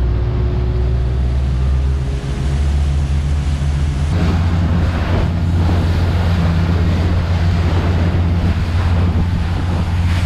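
Motorboat running at speed through chop: a steady low engine drone under rushing water, spray and wind buffeting the microphone. About four seconds in the sound shifts, with more spray hiss over a stronger engine note.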